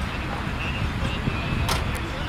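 Steady low rumble of road vehicles, with two sharp clicks close together near the end.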